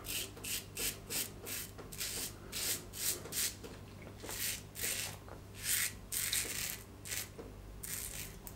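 Executive Shaving Claymore safety razor with a Feather Pro Guard blade scraping through lather and light stubble on the neck. It makes a run of short strokes, about two a second.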